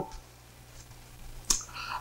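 Quiet room tone with a faint steady low hum, broken by a single sharp click about one and a half seconds in.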